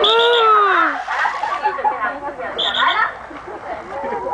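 A pig splashing down into a pool at the foot of a slide, as people cry out, one long call falling in pitch, then chatter.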